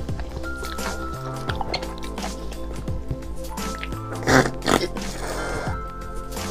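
Background music, with two loud slurps about four seconds in: marrow being sucked out of a cut braised bone.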